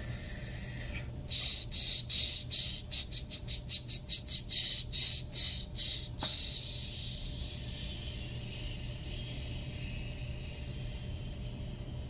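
A person imitating a steam train with the breath: a run of hissing 'ch' chuffs that speed up and then slow, ending in one long hiss that fades away, over a steady low hum.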